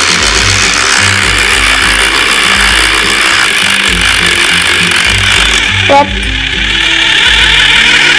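Small electric motor of a toy mini blender running steadily, spinning to churn mashed mango and liquid yogurt together.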